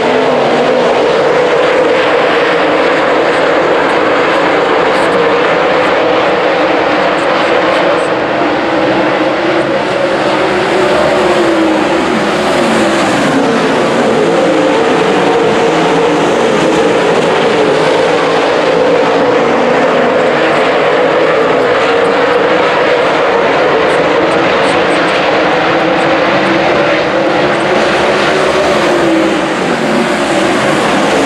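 A field of dirt late model race cars running at racing speed around a dirt oval, their V8 engines loud and continuous, the pitch rising and falling as cars pass through the turns and down the straights.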